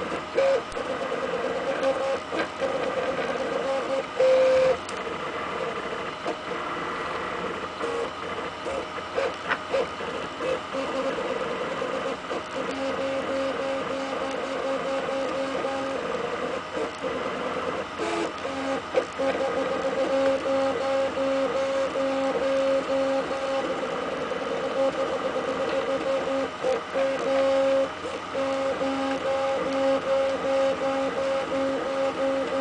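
RepRap 3D printer's stepper motors whining as the print head moves. The steady tones cut in and out and shift pitch with each move, over a light running noise.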